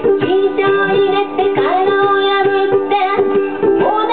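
A woman singing a melody with held notes over her own strummed ukulele accompaniment.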